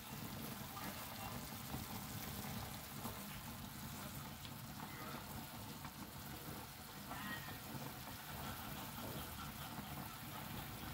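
Chicken pieces boiling in a stainless steel pot of water, a steady, quiet bubbling.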